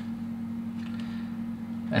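A steady low hum, one unchanging tone, under faint room noise.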